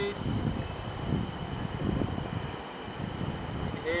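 Wind buffeting the microphone in uneven low gusts over the steady rush of a flowing river.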